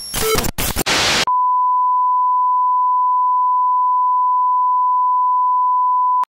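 About a second of harsh, stuttering glitch static, then a steady 1 kHz broadcast test tone that comes in suddenly and holds unchanged. This is the line-up tone that goes with colour bars at a TV station's sign-off.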